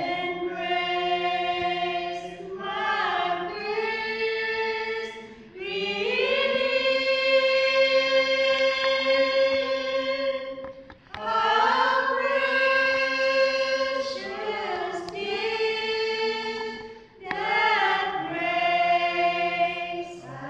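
A small group of women singing a Christmas carol together in long held phrases, with short breaks between phrases every five or six seconds; the longest note is held for about four seconds near the middle.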